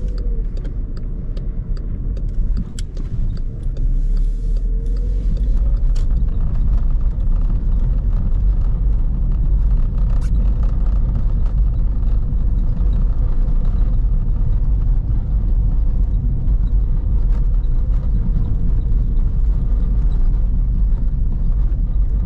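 Inside the cabin of a 2010 Skoda Fabia II, its 1.6 TDI four-cylinder diesel runs at low city speed. A steady low rumble of tyres on a wet, cobbled street goes with it, with a faint engine tone that slowly rises and falls and a few light clicks in the first few seconds.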